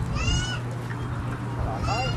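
Gull giving two short, high, arched mewing cries, one near the start and one at the end, over a steady low hum.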